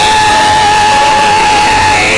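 Live gospel worship music with a single high note held steady over the band for about two seconds, breaking off near the end.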